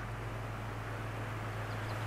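Quiet background: a steady low hum with a faint hiss.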